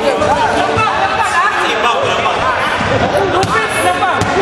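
Several people talking and calling out at once in an echoing gym, with two sharp knocks near the end.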